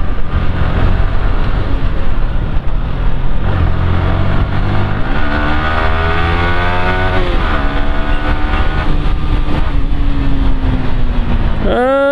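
Yamaha sport motorcycle's engine running while riding through town traffic, with wind noise on the microphone. About five seconds in, the engine note climbs for two seconds as the bike accelerates, then drops back and eases off slowly toward the end.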